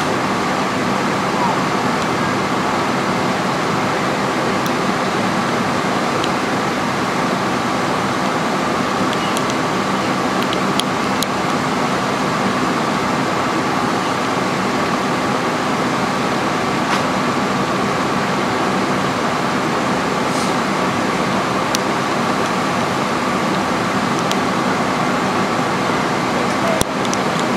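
Steady drone of fire apparatus engines running their pumps at a working fire, unchanging throughout with a few faint clicks.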